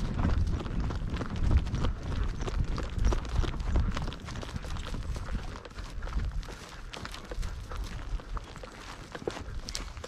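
Horses' hooves on a grassy dirt trail, heard from horseback among a group of riders, with irregular clip-clop footfalls. A heavy low rumble dominates the first four seconds, then eases.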